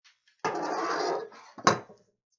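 Wooden boards being handled: a rough scrape of wood on wood lasting about a second, then a single sharp knock.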